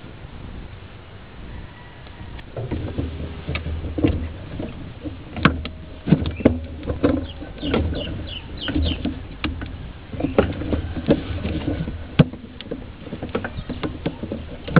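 Rubber hose being twisted and pushed onto the oiled spout of a new PCV valve: irregular rubbing and sharp handling clicks and knocks, starting about two and a half seconds in.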